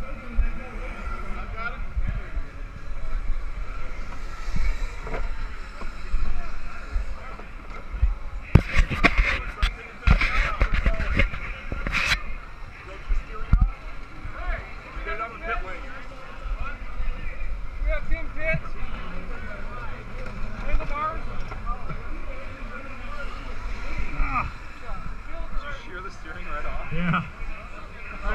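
Indistinct voices of people nearby over a steady low rumble, with a run of sharp knocks and clatter from about eight and a half to twelve seconds in.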